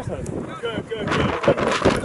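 Indistinct shouted voices of players calling out across an outdoor practice field, with several dull thumps in the second half, the loudest about a second and a half in.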